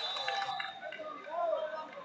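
Voices of coaches and spectators talking and calling out in a large sports hall during a wrestling bout, with a high steady tone that stops about half a second in.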